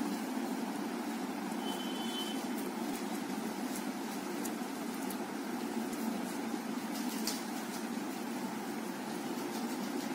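A steady low mechanical hum with a few faint clicks as plastic basket wire is handled.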